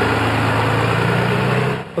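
Fire department rescue ambulance's engine running close by: a steady low hum under a broad hiss that stops abruptly shortly before the end.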